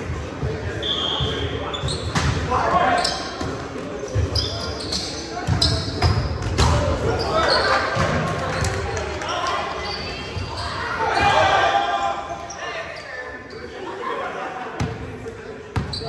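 Indoor volleyball play in a reverberant gymnasium: players call out and shout while the ball is struck and bounces on the hard floor several times, with sharp smacks that ring in the hall.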